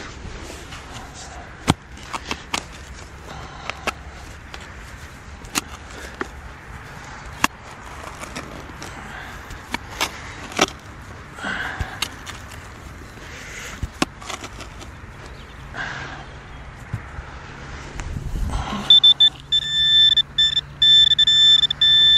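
A spade digging into grassy soil: sharp clicks and scrapes as the blade cuts the turf and earth. About nineteen seconds in, an electronic metal-detecting pinpointer pushed into the hole gives a steady high-pitched tone with brief breaks, the sign that it is right on the buried target.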